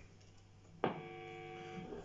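Electric guitar strings ringing through a Blackstar HT Stage 60 MKII valve combo on its overdrive channel. The sound starts suddenly about a second in and holds as one steady, sustained chord.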